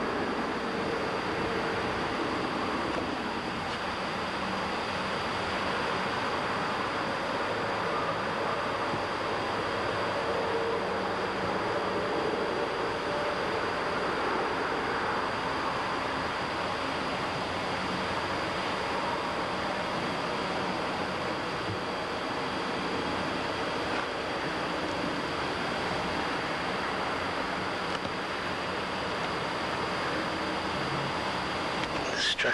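Steady rumble and rushing noise of a car moving slowly, heard from inside, with a faint steady high tone running under it.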